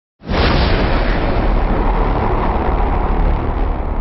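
Cinematic explosion-like boom sound effect for an animated logo intro: it hits suddenly a moment in, then carries on as a loud, deep rumble whose upper hiss slowly fades.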